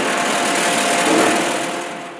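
Hydraulic forging press working a white-hot 50-tonne steel ingot: a steady, loud hiss with a faint hum, fading away near the end.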